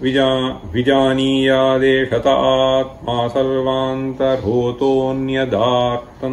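A man chanting a Sanskrit Upanishad passage in traditional Vedic recitation, holding long, steady notes on only a few pitches with brief pauses between phrases.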